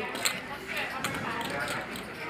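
Poker chips clicking as a player handles his stacks, a few short sharp clacks over low murmuring voices at the table.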